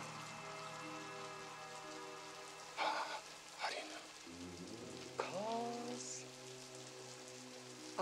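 Steady rain, with a held, droning film-score chord that shifts to a new chord about halfway through. A few short, sharp sounds come around three seconds in, and a gliding, eerie sound follows a little after five seconds.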